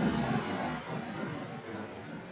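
Echo of a shotgun blast rolling back and fading away over about a second, then a lower lingering rumble.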